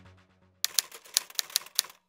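Typewriter sound effect: a quick, uneven run of sharp key clicks, about five a second, starting about half a second in as a music track fades out.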